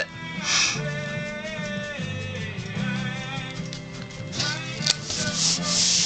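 Paper rubbing and sliding as a stamped card panel is positioned and pressed flat onto a note card, with a brief swish about half a second in and a longer, louder rubbing near the end. Soft background music with sustained notes plays underneath.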